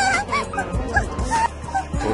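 A woman's voice making a string of short, high-pitched vocal sounds, each rising and falling in pitch, several in quick succession over background music.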